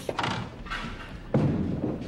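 A bowling ball lands on the wooden lane with a heavy thud about halfway through, then rolls on with a low rumble.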